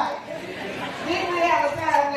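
Speech only: a woman talking into a handheld microphone, with brief pauses between phrases.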